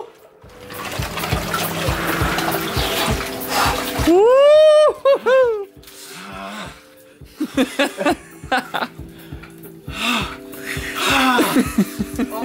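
Icy water sloshing in a water-filled chest freezer as a man climbs out of an ice bath, then a loud yell that rises and falls about four seconds in, followed by shorter cries. Background music plays underneath.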